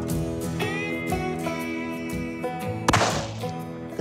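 A single rifle shot from a CZ 600 bolt-action centerfire rifle about three seconds in, a sharp crack with a brief echoing tail. Guitar music plays underneath throughout.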